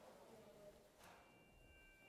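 Near silence, then a faint chime struck about a second in, ringing on with a few steady high tones, the bell-like signal to bring attention back after a silent moment.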